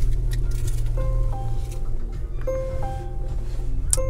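Music from the Volvo XC40's car audio system, which has come on with the car just after it was started, over a steady low hum.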